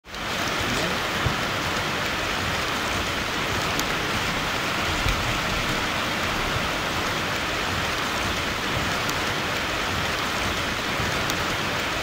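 Steady rain falling on hard surfaces: an even hiss with a few louder individual drops. It fades in quickly at the very start.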